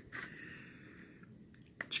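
Faint handling noise from a small clear plastic cat-food tub being held and turned in the hand: soft rubbing with a few light clicks, including a short click just before the end.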